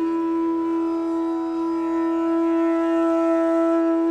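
Bansuri (Indian bamboo transverse flute) holding one long, steady note in a raga, over a quiet low drone.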